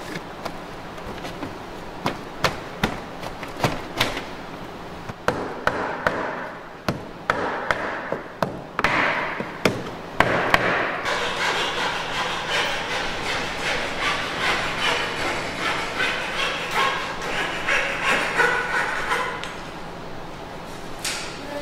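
Hammer blows driving wooden ribs down into a birchbark canoe hull: irregular sharp knocks on wood for about the first half, then a denser, busier run of small knocks and scraping.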